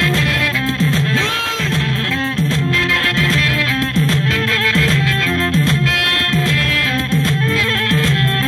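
Live Tigrinya band music played instrumentally: bass guitar, keyboard and saxophone, with a bass figure of short sliding low notes repeating about every half second.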